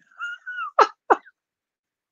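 A man laughing over a video-call link: a high, squeaky wheeze held for about half a second, then two short falling gasps, after which the sound cuts off.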